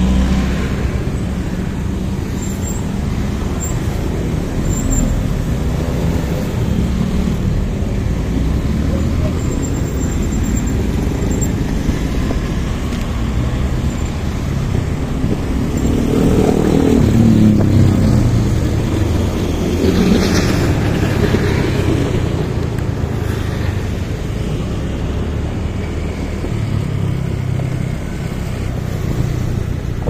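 Motorcycle riding through busy town traffic: a steady engine and road rumble with other cars and motorbikes around it. A louder engine sound rises and falls a little past the halfway point.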